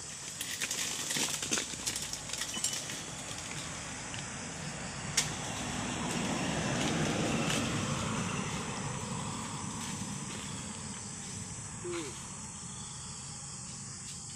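Crackling and snapping as a long-poled harvesting blade works against the frond bases of a low oil palm, with a sharp click about five seconds in. Then a car passes on the nearby road, its sound swelling and fading over several seconds.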